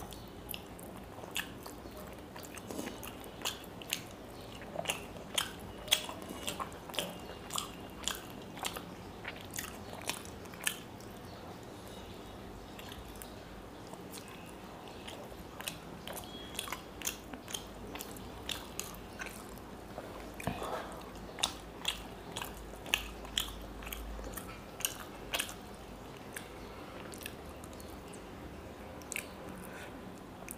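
Close-up chewing of fried fish eaten by hand: wet mouth clicks and smacks come irregularly, several a second, with a few quieter pauses between bites.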